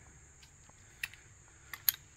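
A few light metallic clicks of strap S-hooks with spring safety clips being hooked together: one about a second in, then two quick ones near the end, the last the loudest.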